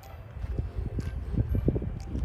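Wind rumbling on the phone's microphone outdoors, with a few soft knocks from about halfway through to near the end.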